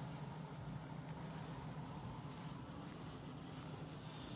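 Quiet room tone: a steady low hum with faint hiss and no distinct events.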